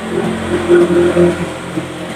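A motor vehicle's engine running steadily.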